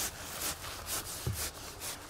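Hand saw cutting through the rind and flesh of a giant pumpkin, in even back-and-forth strokes of about two and a half a second.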